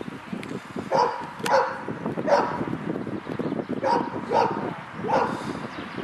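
A dog barking: six short barks in uneven spacing, coming in pairs about half a second apart.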